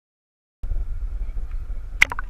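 Silence, then about half a second in a low rumbling noise cuts in suddenly and keeps going, unsteady in level, with a faint wash above it: wind buffeting an outdoor camera microphone at the edge of a tide pool.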